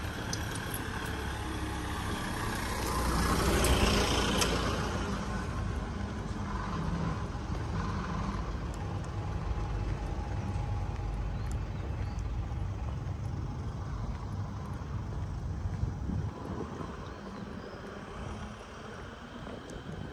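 Small box truck driving past on a narrow street, its engine and tyres growing louder to a peak about four seconds in, then fading away. Afterwards a steady, lower traffic hum remains.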